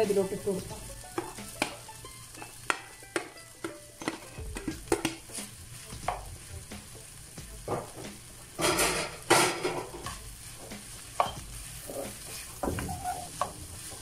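A spatula scraping and knocking against a nonstick wok as vegetables and cooked rice are stir-fried, over a light sizzle. The strokes come as irregular short clicks, with a louder scraping burst about nine seconds in.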